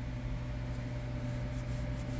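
Steady low machine hum with a faint thin whine above it, heard inside a parked semi truck's cab.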